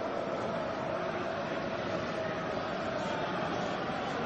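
Steady stadium crowd noise at a football match: an even, unbroken murmur with no single event standing out.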